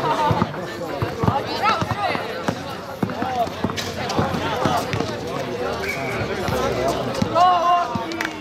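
A basketball being dribbled and played on an outdoor court: a string of irregular bounces, with players and onlookers calling out and talking throughout.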